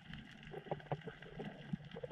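Muffled underwater sound picked up by a submerged camera: a low steady rumble with scattered faint clicks and knocks.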